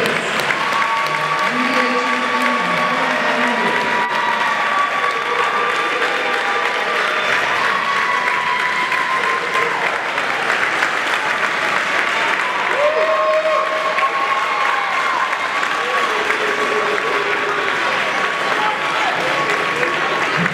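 Audience applauding steadily, with voices calling out and cheering over the clapping.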